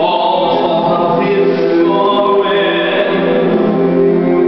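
A man singing a Broadway show tune along with an orchestral backing track, his voice echoing in a hard-walled corridor.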